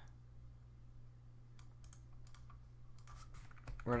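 Faint computer mouse clicks and keyboard key presses, a few scattered clicks that come more often in the second half, over a low steady hum.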